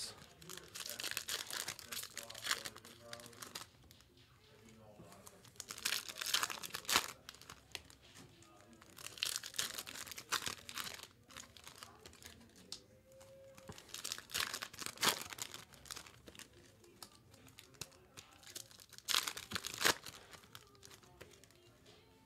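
Foil wrappers of 2023 Topps Chrome Update trading-card packs being torn open and crinkled, one pack after another. The tearing and crinkling comes in about five bursts a few seconds apart.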